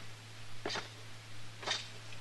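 Footsteps in a radio-drama sound effect: two slow steps about a second apart, over a steady low hum from the old recording.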